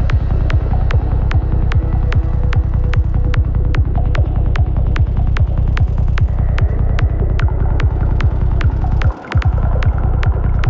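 Dark forest psytrance: a fast, steady kick drum and dense rolling bassline under busy high percussion. The bass and kick drop out for a split second about nine seconds in, then come straight back.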